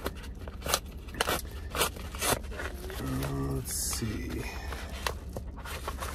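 A padded paper mailer being torn open and handled, its paper crackling and rustling in irregular snaps and tears, with one longer tearing rasp around the middle.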